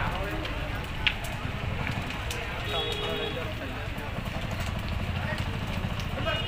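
Open garbage fire burning, a steady low rumble with scattered sharp crackles, one louder snap about a second in.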